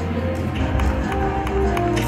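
Video slot machine's game music playing during a spin, with a run of short ticks as the reels land.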